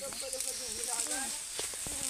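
People talking faintly over a steady high-pitched hiss, with a few sharp clicks or snaps in the second half.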